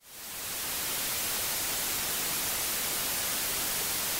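Electronically generated white noise: a steady, even hiss spread across all frequencies. It fades in during the first second.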